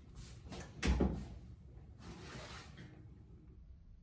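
Oven door pulled open with a few knocks and a heavy clunk about a second in, then the metal baking sheet of cookies sliding out over the oven rack.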